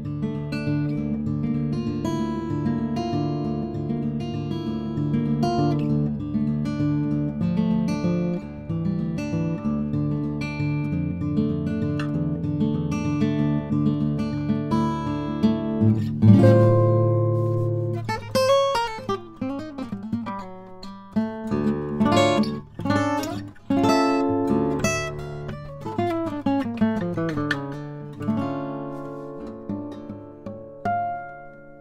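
Waterloo WL-JK Deluxe jumbo acoustic guitar with a solid spruce top and solid mahogany back and sides, played solo. Quick notes run over a regular low bass pulse for the first half. A loud low note rings out about halfway through, and a sparser passage of separate ringing notes follows.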